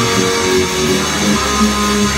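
Amplified electric guitar playing a rock part, loud and continuous, with low held notes underneath in the second half.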